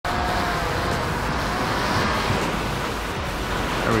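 Surf breaking on the beach, with steady wind noise on the microphone.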